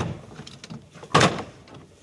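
Plastic interior trim panel on a Mitsubishi Xpander's rear quarter being pulled away from the body: a sharp snap right at the start and a louder, longer plastic crack about a second in, as its retaining clips let go.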